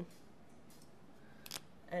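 A single sharp click about one and a half seconds in, with a few faint rustles before it, as a marker is handled while being swapped for another.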